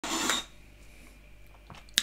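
A man's brief breathy vocal sound, then faint room tone, with a sharp click near the end.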